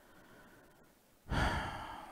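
A man's heavy sigh, breathed out close into a headset microphone about a second in and fading within the second.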